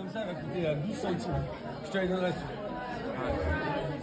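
Several people talking at once in a busy restaurant dining room: overlapping conversation with no one voice clearly in front.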